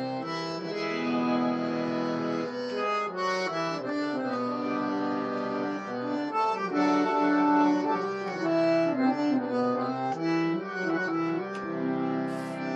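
Harmonium playing an instrumental passage of held notes, the melody moving from note to note over sustained lower notes.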